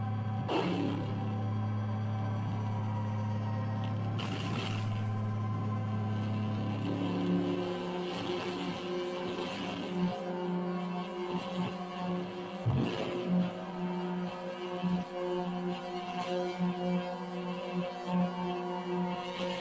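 Improvised electronic drone music from effects pedals: a steady low drone of held tones, crossed by swooshing noise sweeps about half a second in and again around four seconds. About seven seconds in the drone moves up to a higher pitch and turns broken and flickering, with another swoosh near thirteen seconds.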